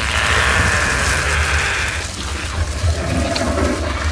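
Film sound effect of a large fire: a rushing noise over a deep steady rumble. The rushing is strongest in the first two seconds, then eases.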